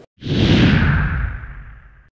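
Whoosh sound effect with a deep rumble under it for an animated logo ident: it starts suddenly a moment in, its hiss falls in pitch, and it fades out over about a second and a half.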